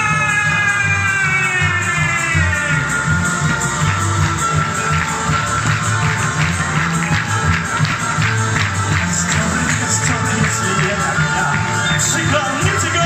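A tenor voice holds a long sung note over instrumental accompaniment; the note slides down and ends about two and a half seconds in. The accompaniment then carries on alone with a steady rhythmic beat.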